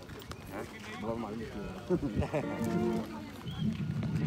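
People's voices talking, louder from about a second in.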